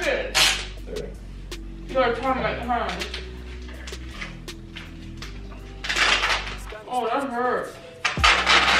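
Duct tape being pulled off the roll in two short, noisy rips, about half a second in and again about six seconds in, as it is wound around a seated person.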